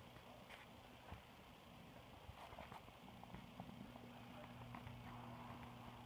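Near silence: a faint, steady low hum with a few soft, scattered taps.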